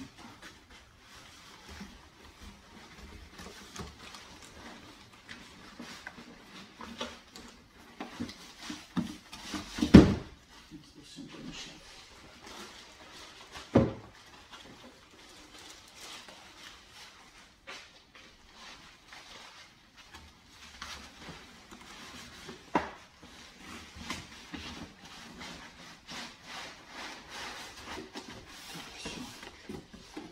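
Cardboard boxes and foam packing being handled and shifted about on a wooden table, with scattered rustles and rubs, a heavy thump about ten seconds in, a lighter knock a few seconds later and a sharp click later on.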